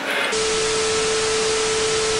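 TV static sound effect: a loud even hiss of white noise with one steady mid-pitched tone under it, switching on abruptly about a third of a second in, as a glitch transition.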